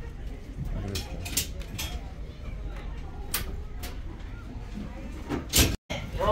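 Boat engine idling at the dock, a low steady rumble under faint background voices. Several sharp knocks cut through it, the loudest near the end.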